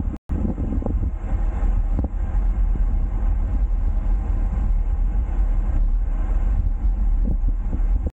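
Steady wind rumble on the microphone of a 360° camera mounted on a road bike being ridden along a street. The sound cuts out for a split second just after the start.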